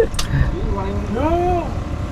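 A person's drawn-out voice that rises and then falls in pitch, over a steady low rumble, with one short click near the start.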